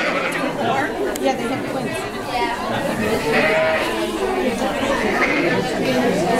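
Sheep bleating over a crowd of people chattering, with one longer bleat about halfway through.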